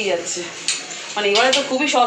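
A few light, sharp clinks like metal or crockery knocking together in the first second, then a woman speaking.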